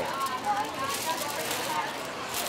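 Aluminium foil crinkling as it is pulled off a pizza in a cardboard box, over street noise and faint voices.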